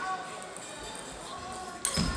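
Murmur of distant voices in a large sports hall, then one sharp click of a table tennis ball being struck near the end.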